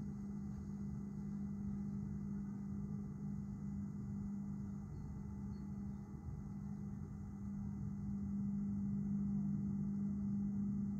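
Steady low engine hum over a rumbling background, growing slightly louder over the last couple of seconds.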